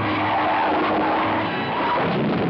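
A large old car skidding on a dirt road: loud, steady tyre squeal and sliding noise with the engine running hard.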